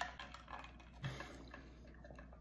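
Faint small clicks, with a person's brief low hum ('mm') about a second in.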